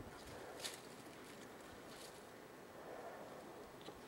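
Faint scuffing and scraping of a person crawling over dirt and rock into a narrow mine opening, with one slightly louder scrape just over half a second in.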